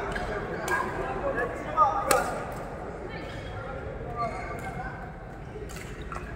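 Badminton rackets striking a shuttlecock during a rally: several sharp hits at irregular intervals, the loudest about two seconds in, over background chatter.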